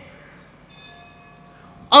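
A temple bell rings faintly in the background: a single ringing tone that starts about half a second in and dies away within about a second.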